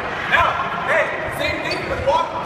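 A few short bursts of voices echoing in a large gym hall, with a couple of low thuds on the wooden floor.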